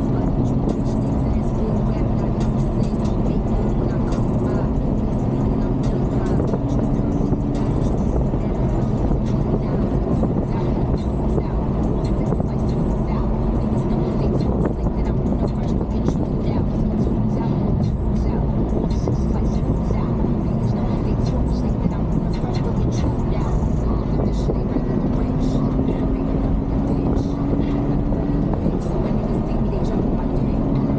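Cabin sound of a Ferrari GTC4Lusso driving on the road: a steady mix of engine and tyre noise, with an engine hum that slowly climbs in pitch several times as the car gathers speed.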